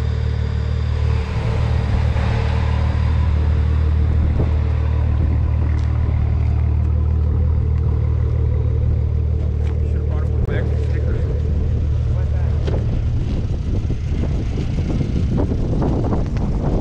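A steady low engine hum, like a vehicle engine idling near the microphone, holding one even pitch until it gives way to rougher, uneven low noise about three-quarters of the way through.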